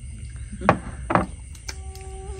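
Two short, soft knocks about half a second apart, over a steady low hum, like tableware being set down or tapped on a wooden table during a meal. Faint background music notes come in near the end.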